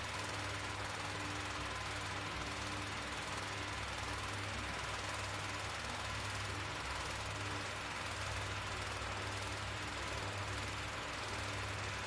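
Steady low hum with an even hiss over it: room background noise picked up by a phone's microphone, with no distinct events.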